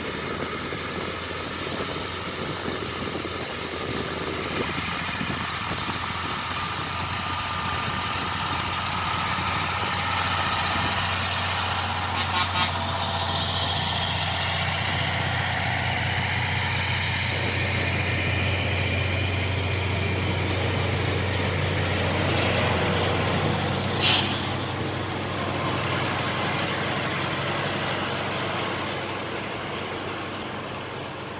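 Heavy diesel engines of a Massey Ferguson 6485 tractor and a DAF XF semi-truck running hard together, with a steady low drone, as the tractor tows the truck out of deep mud. A short, sharp hiss comes about 24 seconds in.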